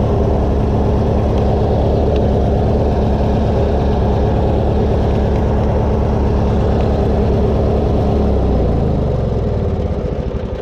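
Craftsman riding lawn tractor's small gasoline engine running steadily as it drives along. About eight seconds in, its note drops lower.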